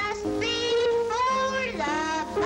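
A boy singing a slow melody in long held notes, with instrumental accompaniment underneath.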